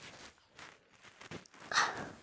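A small puppy gives one short bark near the end, over soft rustling of the bedding.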